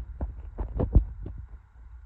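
Irregular low thumps and rumble on the camera microphone, bunched in the first second and a half, over a faint steady hum.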